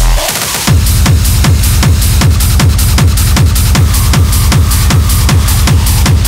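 Hard techno playing loud, a fast heavy kick drum coming back in about half a second in after a short break and then striking evenly at about two and a half beats a second, with hi-hats above.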